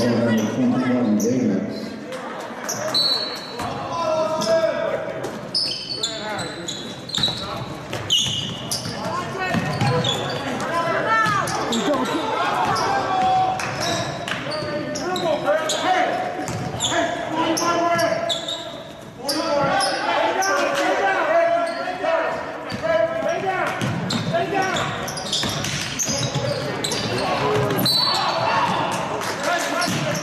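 A basketball game on a hardwood gym court: a ball dribbling and bouncing, sneakers squeaking, and players and coaches calling out, all echoing in the large hall.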